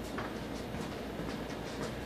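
Light scuffs and taps of boxers' feet and gloves during sparring, over a steady low hum.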